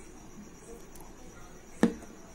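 A single sharp knock near the end, over a faint, steady, high-pitched trill.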